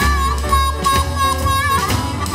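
Electric blues band playing an instrumental stretch: a harmonica lead bends and wavers its notes over bass, drums and piano.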